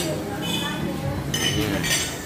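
Eatery ambience: people talking, with dishes and cutlery clinking; bright clinks ring out about half a second in and again near the end.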